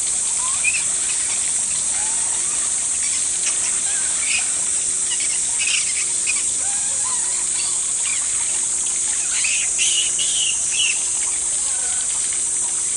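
Outdoor ambience: a steady high-pitched hiss with scattered short chirps and little rising squeaks over it, the chirps coming thicker near the end.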